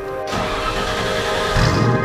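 Background music over the turbocharged TVR Chimaera's V8 starting up: a rushing build from about a third of a second in, then the engine catches with a low, steady note about one and a half seconds in.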